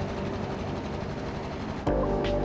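Steady outdoor noise of city traffic, with faint music underneath. Just before the end it cuts suddenly to louder music with a deep rumble.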